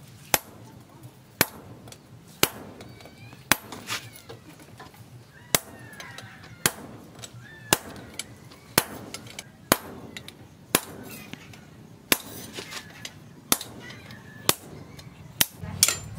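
Hand hammer striking a steel machete blank held in tongs on a steel anvil: sharp metallic blows at about one a second, with a short double strike about four seconds in.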